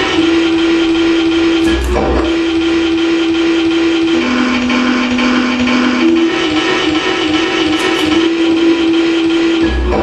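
Live noise music from a homemade electronic noise toy: a loud, steady humming tone that wavers at times and drops lower for a couple of seconds in the middle before returning, over a dense buzzing texture. Low thuds break in about two seconds in and again near the end.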